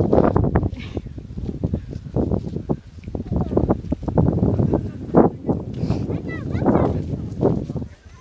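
A young child fussing and whining in short high-pitched cries, over a continuous low rumble of handling and wind noise on the phone's microphone.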